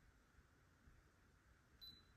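Near silence: quiet room tone, with one short, faint, high-pitched beep near the end.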